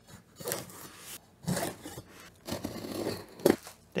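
Cardboard shipping box being unpacked: packing tape ripped off and flaps scraped open, then bubble wrap rustling as a wrapped item is pulled out. A sharp tap near the end is the loudest sound.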